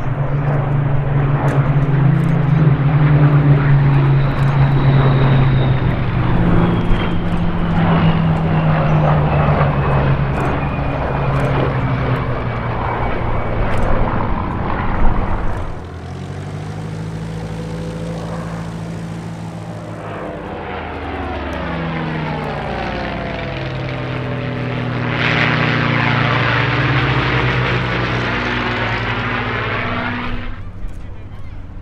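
Piston engines of several WWII propeller fighters passing together, with a slowly falling whine as they go by. About halfway through it cuts to a single Supermarine Spitfire's Rolls-Royce Merlin V12 running, growing louder near the end as it comes in low.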